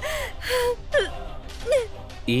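A woman gasping and whimpering in distress: several short breathy gasps and cries, her voice bending up and down.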